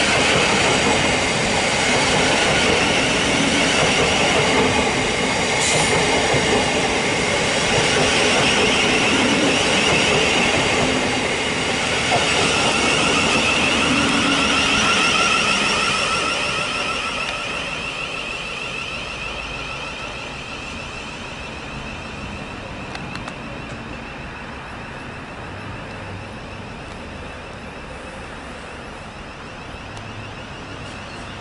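Thameslink class 700 electric multiple unit (Siemens Desiro City) running along the rails close by, its traction motors whining in shifting tones along with steady wheel and rail noise. Loud for about the first half, then dying away as the train draws off.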